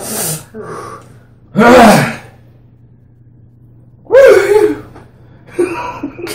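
A man gasping and sneezing from the burn of ghost pepper salsa: a sharp breath at the start, then two loud voiced bursts, one about a second and a half in and one just after four seconds.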